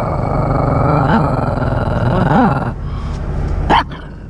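Small shaggy dog growling and grumbling, with two short rising-and-falling yowls, then a single sharp bark near the end.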